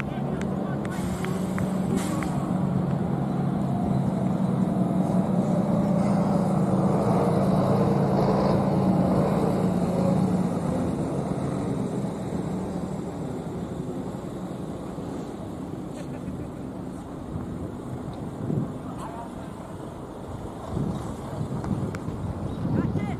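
A motor vehicle's engine, a steady low hum that builds over about ten seconds and then fades away.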